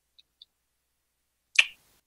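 A single sharp click about one and a half seconds into an otherwise near-silent pause.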